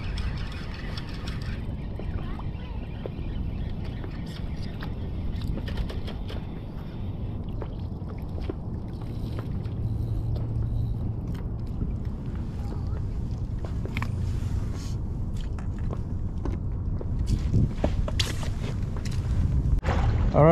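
Steady low rumble of wind and water on an open boat, with scattered light clicks and knocks.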